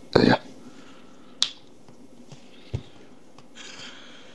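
A single sharp click about a second and a half in, then a soft low thump about a second later, over quiet room tone in a small room.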